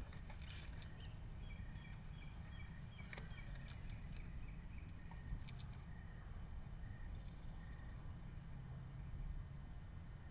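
Faint outdoor background: a steady low rumble, with faint, repeated short high chirps and several sharp clicks in the first half.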